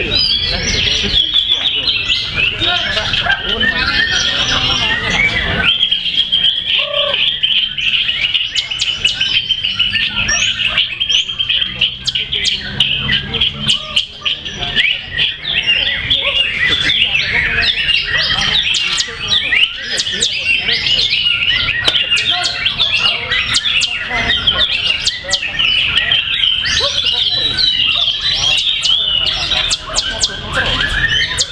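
White-rumped shamas singing in a songbird contest, several caged birds at once: a dense, unbroken run of rapid whistled and chattering phrases with many sharp clicking notes.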